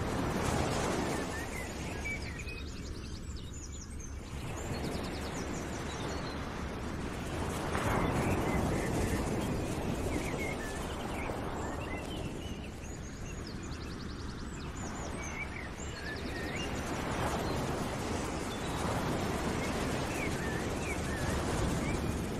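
Birds chirping over a steady rushing background noise that swells and ebbs every several seconds.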